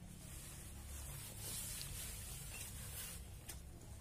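Faint rustling of a nylon tent flysheet as it is pulled and draped over the dome frame, swelling a second or so in, with a few light clicks, over a steady low rumble.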